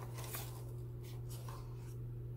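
Small cardboard product box being opened by hand: a few short, scratchy scrapes and rustles of the cardboard, over a steady low hum.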